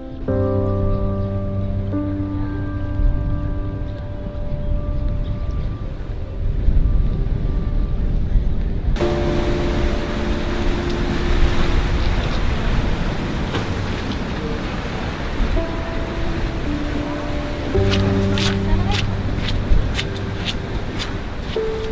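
Background music of slow, sustained chords over a deep bass note. About halfway through, a steady rushing noise suddenly joins it, and sharp ticks come in near the end.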